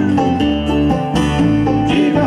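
Bluegrass band playing live on stage: picked acoustic strings over a steady bass, with no voice singing in this stretch.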